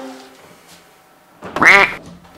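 A single loud animal-like call, about half a second long near the end, its pitch rising and then falling. A faint pitched note fades out at the start.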